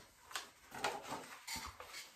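Soft rustles and light taps of a hardcover picture book being handled and lifted, with a couple of dull thumps about one and a half seconds in.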